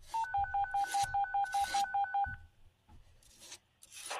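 A rapid string of short dual-tone beeps like telephone keypad (DTMF) tones, about six a second for two seconds after a brief single tone. These are radio signalling tones ahead of an emergency dispatch call, heard over a scanner.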